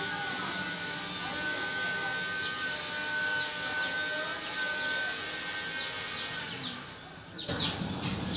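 Small birds chirping in short, repeated high calls over a steady background with a sustained tone. The sound changes abruptly just before the end.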